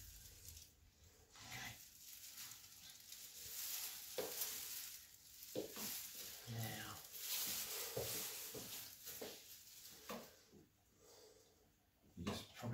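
Jaco robotic arm's joint motors whirring faintly in stretches of a few seconds as the arm moves toward a wall switch, with a few light clicks.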